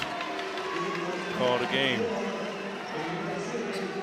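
Basketball arena ambience: indistinct voices around the court and a single sharp knock near the end, a basketball bouncing on the hardwood floor.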